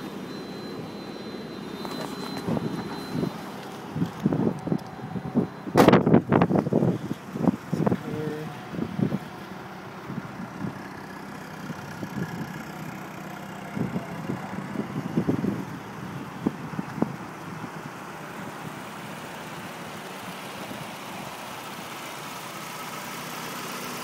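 A 1995 Mazda Miata's 1.8-litre four-cylinder engine idling steadily. A sharp knock about six seconds in is the loudest sound, with scattered knocks and thumps around it and again around fifteen seconds in.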